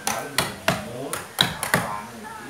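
Mallet striking a carving chisel into a wooden block, roughing out a Balinese barong mask: about six sharp knocks at an uneven pace.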